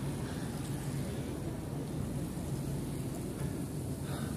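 Steady low rumble of outdoor background noise with a faint, even hum underneath; no single event stands out.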